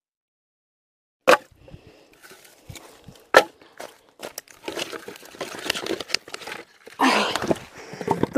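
Dry firewood sticks being gathered: two sharp wooden knocks, about a second and three and a half seconds in, then irregular crackling and rustling of dry sticks and brush.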